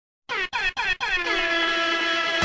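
Opening of a hip-hop track with a DJ air-horn effect: three short blasts followed by one long held blast, starting suddenly about a third of a second in.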